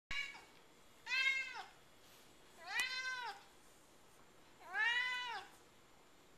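Domestic cat meowing: a short call right at the start, then three long meows about two seconds apart, each rising and then falling in pitch.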